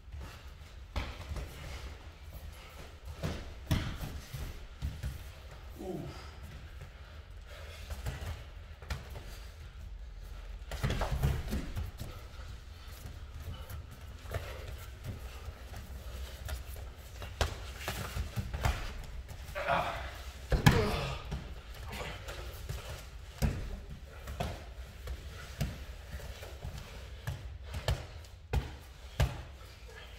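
MMA sparring on foam floor mats: scattered thuds and slaps of bare feet, gloved strikes and bodies hitting the mat. About two-thirds of the way through there is a short grunt, and the loudest thud comes with it.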